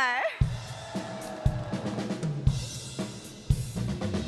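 Intro of a trot song, mostly drum kit: a heavy kick-and-snare hit about once a second, with hi-hat, cymbals and bass underneath. A long held shout tails off in the first moment.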